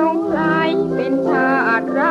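Vintage Thai popular song recording: a female singer draws out a line with vibrato over sustained chords from the band.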